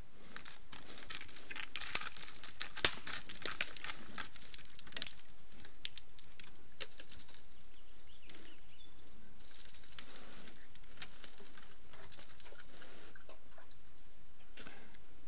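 Trail-camera audio of American black bears climbing a tree: irregular scratching and clicking of claws on bark, busiest in the first five seconds, with one sharp knock about three seconds in, over a steady hiss.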